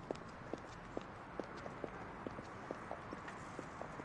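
Footsteps of hard-soled shoes on a hard floor, an even walking pace of about two steps a second, each step a sharp click, over steady low background noise.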